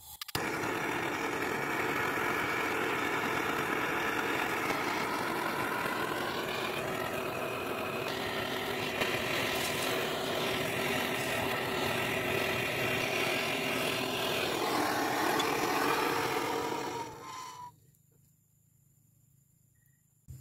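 Hose-fed handheld gas torch burning steadily, its flame playing into a tin-can crucible to melt a small button of silver-gold metal. The flame noise is shut off near the end.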